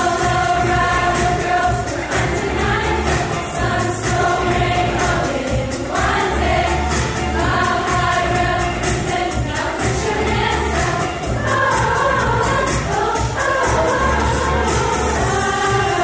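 High school choir singing a song in harmony, over an accompaniment with a steady bass line.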